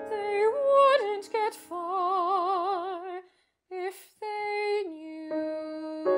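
Operatic female voice singing held notes with a wide vibrato over instrumental accompaniment; the voice stops briefly about halfway through, and steady held accompaniment notes follow.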